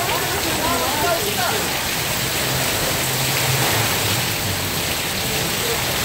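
Heavy rain falling steadily in a downpour, a dense, even hiss with no let-up.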